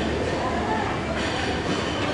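Buffet dining-room ambience: a steady background din with indistinct voices.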